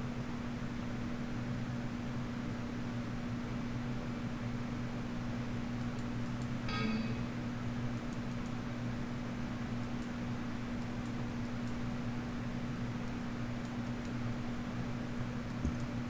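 Steady low electrical hum of running equipment in a small room, with a short pitched beep about seven seconds in and faint scattered clicks after it.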